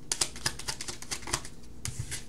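Cards being leafed through one after another in a hand-held deck, a quick run of light clicks about ten a second that thins out near the end.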